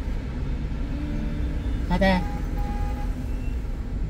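Steady low rumble inside the cabin of a stopped car, typical of its engine idling.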